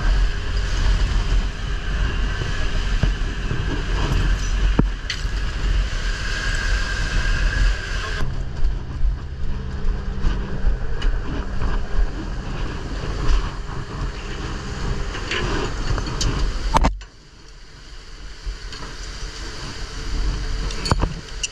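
Fishing boat's engine running with wind and rushing sea water on deck, a steady low rumble. About eight seconds in it changes abruptly to a steadier low hum, and about seventeen seconds in it drops suddenly to much quieter.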